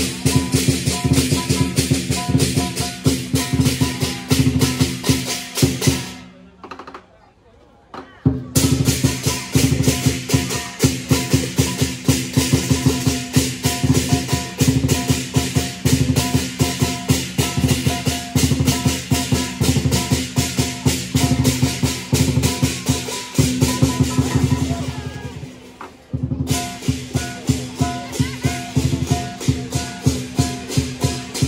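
Lion dance percussion band playing a fast, continuous beat on a big drum with clashing cymbals and gong, accompanying a lion dance on poles. The music breaks off about six seconds in and comes back about two seconds later, then fades and cuts back in once more near the end.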